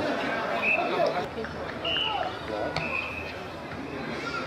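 Distant shouts and chatter of players and onlookers across an open football pitch, with a few short high-pitched calls.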